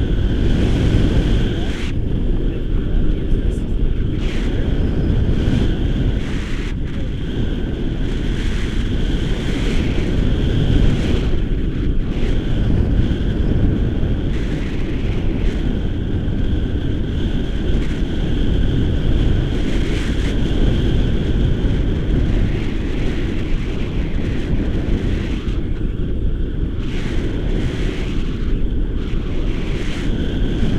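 Rushing air of a paraglider in flight buffeting the camera microphone: a loud, steady low rumble.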